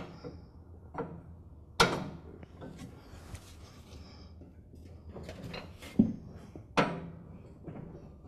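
Metal clanks and clicks of a lawn tractor's mower deck being fitted to its rear hanger bracket: a sharp clank about two seconds in, two more near six and seven seconds, with lighter handling rattles between.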